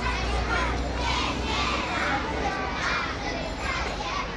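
Many children's voices talking and calling out over one another in a lively babble, with a low rumble underneath that fades about two and a half seconds in.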